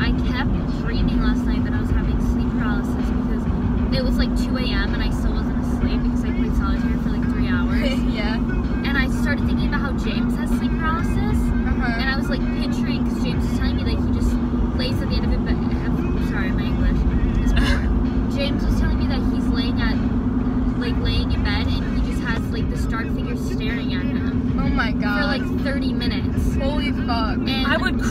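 Road and engine noise inside a moving car's cabin: a steady low rumble with a constant hum, with voices talking over it.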